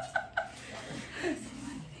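Two women laughing in quick pulses, the laughter trailing off about half a second in, followed by a little soft talk.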